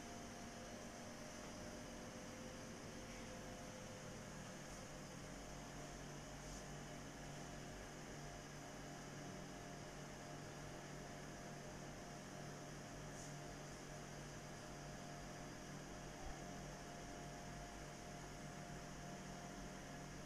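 Faint steady electrical hum with a low hiss: quiet room tone. One soft click about three-quarters of the way through.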